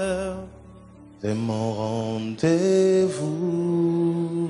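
A man singing a slow gospel chorus into a microphone in long held notes with a slight waver. There is a brief lull about half a second in, with a low steady instrumental note underneath, before the next notes come in.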